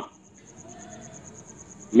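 Faint high-pitched insect trill, pulsing evenly about ten times a second, over quiet room tone.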